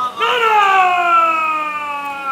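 A man's loud shouted call, one long drawn-out cry held for about two seconds and slowly falling in pitch.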